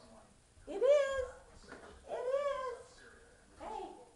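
Two drawn-out, meow-like vocal calls about a second apart, each rising and then falling in pitch, then a shorter one near the end.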